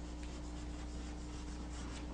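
Chalk drawing on a chalkboard: faint scratching strokes over a steady low electrical hum.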